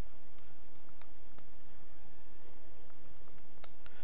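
Plastic keys of a TI-73 Explorer graphing calculator being pressed in an irregular run of about nine soft clicks as an arithmetic expression is keyed in and entered, over a steady low background hum.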